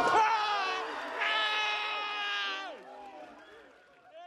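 A voice with a sliding pitch, then a long held note of about a second and a half, over faint steady tones that fade away near the end.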